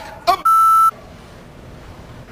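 A censor bleep: one steady high beep, about half a second long, that masks a swear word just after a short spoken word.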